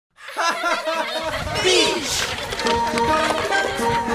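A short burst of laughter falling in pitch step by step. Then music with steady held notes starts about two and a half seconds in.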